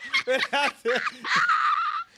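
People laughing hard together: a quick run of short laughs, then a long high-pitched squeal of laughter in the second half.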